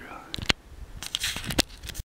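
Handling noise on a hand-held camera's microphone: a sharp click about a quarter of the way in, then rustling and a few more clicks as the camera is moved about.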